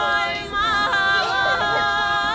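Background music: women's voices singing a Bulgarian folk song a cappella in close harmony, holding long notes with short ornamental turns.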